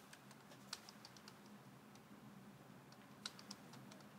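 Faint computer keyboard typing: scattered keystrokes, a short run about a second in and another a little after three seconds, over a faint low hum.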